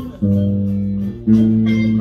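Bass guitar playing a walking boogie-woogie bass line: two plucked notes, each held for about a second, the second a step higher than the first.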